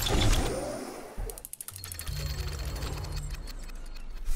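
Title-card sound effects: a whoosh that swells and fades in the first second, then a fast run of mechanical clicks, like a ratchet or gears turning, over a low hum for about two seconds.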